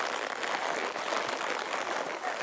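Steady, dense crackling rustle of pine branches and brush scraping past a horse and rider on a narrow, overgrown trail.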